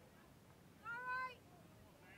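A single high-pitched held shout from a child's voice, about a second in and lasting about half a second, rising slightly and then dropping at the end.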